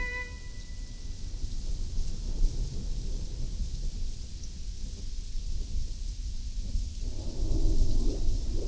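A deep, continuous rumble with a hiss of rain-like noise over it, like a thunderstorm texture in an electronic piece. A held chord of steady tones dies away in the first half second.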